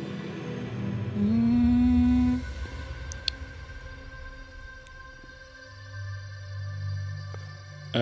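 Ambient electronic music playing back from an Ableton Live session: sustained layered pad tones. About a second in, a loud low tone slides slightly upward for about a second, and a low drone comes in near the end.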